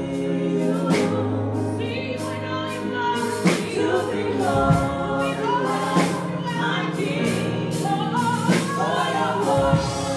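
Live gospel worship song: several singers on microphones over sustained keyboard chords, with a steady beat.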